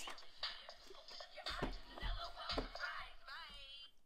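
A hip-hop style pop song with sung vocals playing from the electronic toy journal's small speaker, fairly quiet, cutting off abruptly at the very end.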